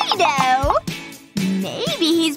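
A girl's high-pitched, wordless excited squeals, sliding up and down in pitch, over children's background music.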